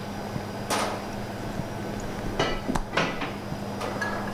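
Light clinks and knocks of a steel jigger and a glass bottle against glassware and the bar top while a measure is poured: one knock under a second in, then three close together near the three-second mark, over a low steady hum.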